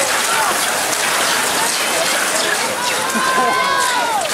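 Cross-country skis and poles hissing and scraping on snow as a pack of skiers passes, over overlapping spectator voices cheering. Near the end one voice holds a long call.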